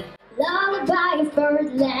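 A young girl singing solo into a microphone, coming in after a brief pause about half a second in, with held, gliding notes of a jazz standard.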